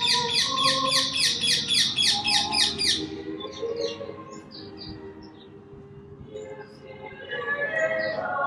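A songbird singing a fast trill of repeated high sweeping notes, about four a second, for the first three seconds, then scattered single chirps. Faint choral singing sounds beneath it and grows louder near the end.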